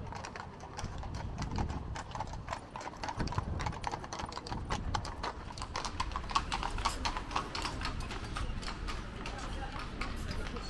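Hooves of a pair of carriage horses clip-clopping at a walk on the pavement, a steady run of sharp hoofbeats.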